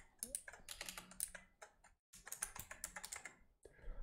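Rapid typing on a computer keyboard, a quick run of key clicks with a brief pause about halfway.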